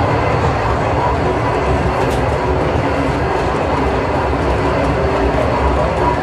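Steady, loud rumbling ambience of a busy shopping-mall atrium, with indistinct crowd chatter mixed in.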